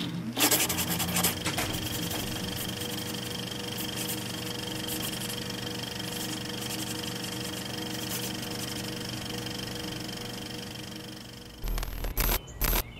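A steady mechanical whirr with fast, fine clicking. It starts abruptly, dips a little near the end and cuts off.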